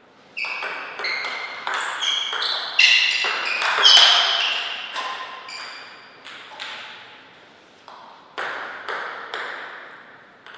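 Table tennis rally: the celluloid-type ball clicking off paddles and the table in quick alternation, about a dozen hits over roughly five seconds, each with a short ringing ping. A few scattered ball bounces follow later as play pauses between points.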